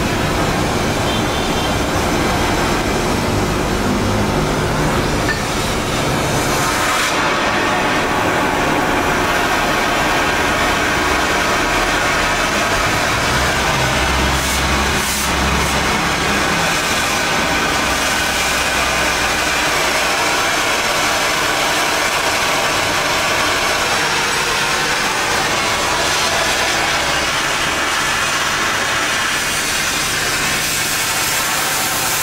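Oxy-fuel gas cutting torch burning with a loud, steady rushing hiss as its flame is adjusted from a yellow fuel-only flame to a blue cutting flame; the hiss turns brighter and sharper about seven seconds in.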